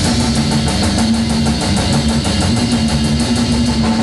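Heavy metal band rehearsing without vocals: a distorted electric guitar holds a steady low, droning note over drums playing a fast, even beat on the cymbals.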